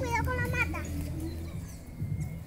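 A child's high voice calling out a short warning, over a steady low hum.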